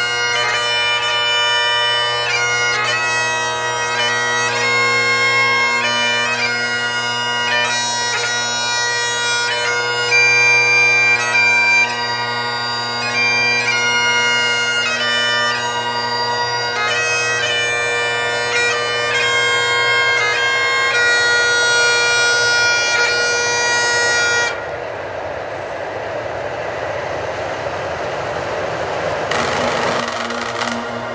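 Bagpipe music with a melody over a steady drone, which stops about 24 seconds in. After it comes an even noise from the freight train hauled by the diesel locomotives as it passes.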